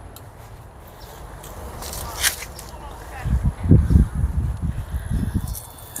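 Footsteps on grass coming toward the microphone as a run of irregular low thuds in the second half, after a single sharp click about two seconds in, over a low steady rumble.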